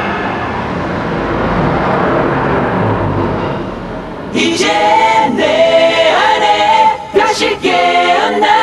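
A steady noise fades away over the first four seconds, then about four seconds in a choir starts singing.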